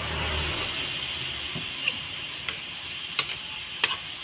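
Water poured into a hot metal wok of stir-fried broccoli, hissing and sizzling steadily. From about halfway in, a metal spatula clinks against the wok about four times as the vegetables are stirred.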